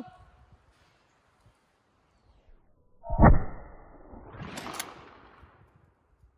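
A single shot from a pump-action 12-gauge Remington 870 pistol-grip shotgun, fired at a clay target about three seconds in and by far the loudest sound. About a second and a half later comes a softer clatter with two quick clicks.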